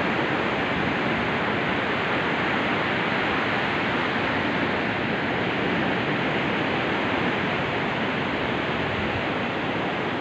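Ocean surf washing onto a sandy beach, a steady, unbroken hiss of breaking waves.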